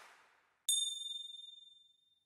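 A single bright ding, like a struck chime, with a high ringing tone that fades out over about a second. It comes just after the tail of a fading whoosh.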